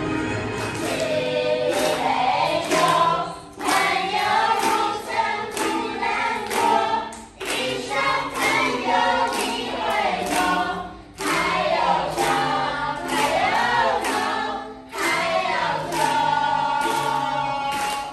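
A group of voices singing a song to ukulele accompaniment, in phrases with short breaks about every four seconds.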